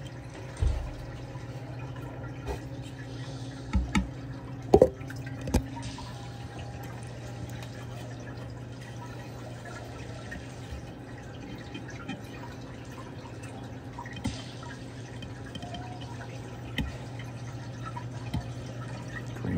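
Reef aquarium water circulation: dripping, trickling water over a steady low hum. A few short knocks come through, about a second in, several between four and six seconds in, and two more near the end.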